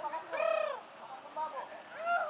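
Birds calling: a few short calls that rise and fall in pitch, the loudest about half a second in and a weaker one about a second and a half in.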